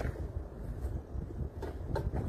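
A steady low rumble of outdoor background noise, with a few faint clicks.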